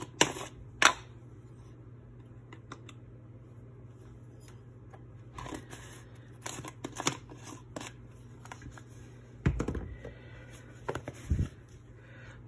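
Scattered clicks and taps of a metal teaspoon and plastic spice jars being handled while onion powder is measured into a small ceramic bowl, with two duller thumps later on as jars are handled against the wooden board. A steady low hum runs underneath.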